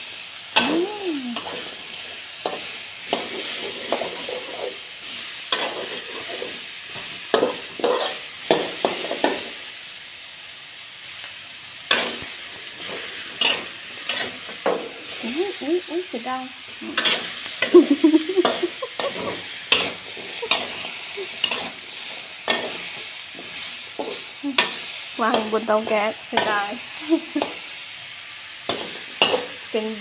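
Metal spatula scraping and clanking against a steel wok, stroke after stroke, as snow peas and minced pork are stir-fried over a steady sizzle.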